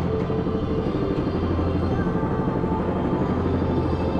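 Roller coaster chain lift hauling the train up the lift hill: a steady low mechanical rumble and rattle, with music playing faintly behind it.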